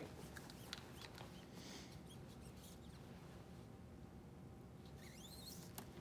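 Near silence: room tone with a few faint clicks and rustles of gloved hands handling catheter equipment, and a faint squeak near the end.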